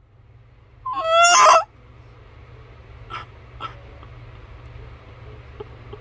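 A young woman's short, high-pitched squeal about a second in, followed by low room hiss with a couple of faint clicks.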